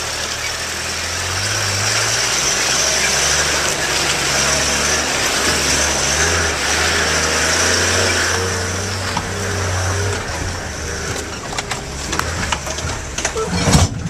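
Toyota Land Cruiser's engine running at low speed as it climbs the steep bank out of the river, under a steady hiss. The engine sound fades a little after about ten seconds, and scattered knocks and rattles from the vehicle come in the last few seconds.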